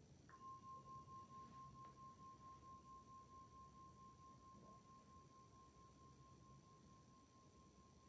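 A meditation bell struck once, just after the start, ringing a single clear, high tone that wavers gently as it fades slowly; it is still sounding at the end. Faint.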